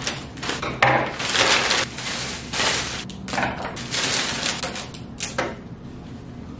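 Kraft paper and cellophane flower wrapping crinkling and rustling in several stretches, mixed with short sharp snips and clicks as flower stems are cut with scissors.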